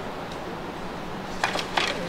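Quiet room tone, then near the end a quick cluster of three or four sharp wooden clicks and knocks as bent canoe ribs and spreader sticks are handled.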